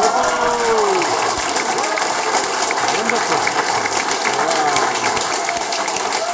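Audience applauding, with voices calling out over the clapping; one call falls in pitch near the start.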